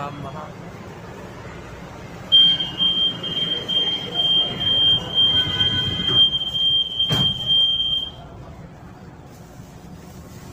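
A high-pitched beeping warning tone starts a couple of seconds in and lasts about six seconds: a light-rail train's door-closing warning buzzer. A single knock sounds shortly before the tone stops.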